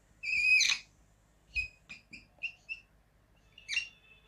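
Marker pen squeaking on a whiteboard as figures are written: one longer squeak near the start, a run of short squeaks in the middle, and another squeak near the end.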